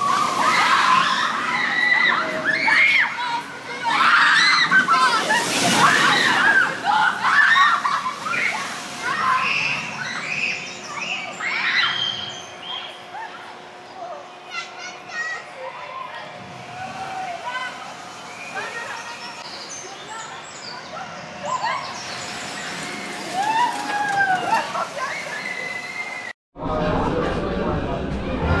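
A steel launch coaster's train rushing over the track in the first several seconds, with riders' shouts and park-goers' voices. It then fades to quieter park ambience with scattered chirps and a faint steady hum.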